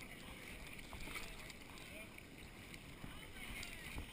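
Faint steady rush of river water through a camera in its waterproof housing, with faint distant voices now and then.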